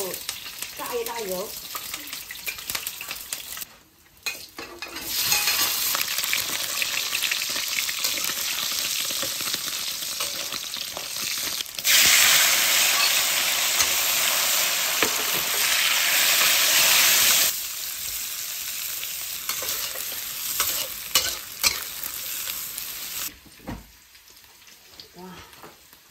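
Fatty Chinese cured pork (larou) sizzling in hot oil in a wok while a spatula stirs and scrapes. About twelve seconds in, the sizzle jumps much louder for around five seconds as the blanched bamboo shoots are tipped in. It then drops back to quieter stir-frying with small spatula clicks and fades near the end.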